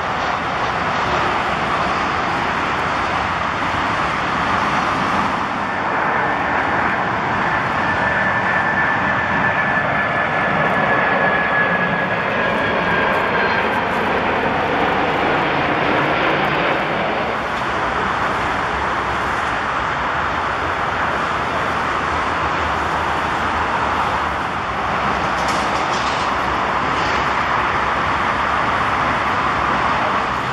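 Jet engines of a Boeing 747-400 airliner on final approach, a steady loud rush, with a faint whine that falls slightly in pitch partway through.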